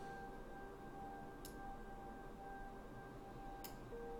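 Quiet room tone with a faint steady high hum, broken by two faint clicks, one about a second and a half in and one near the end: computer mouse clicks while placing an edge loop on the mesh.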